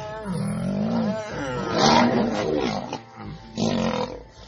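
Male lions fighting, giving a run of loud, harsh calls that rise and fall in pitch, several in a row with short breaks between them.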